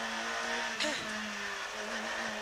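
Peugeot 106 rally car's engine heard from inside the cabin, running under load at fairly steady revs. Its note shifts briefly a little under a second in, then carries on.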